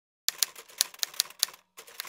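Typewriter key-strike sound effect: about ten sharp, unevenly spaced clacks, starting about a quarter second in, as letters are typed onto a title card.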